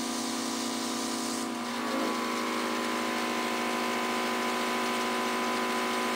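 Small air compressor of a portable oxygen infusion unit running with a steady hum, driving an airbrush gun that sprays oxygen activator; the high hiss eases about a second and a half in.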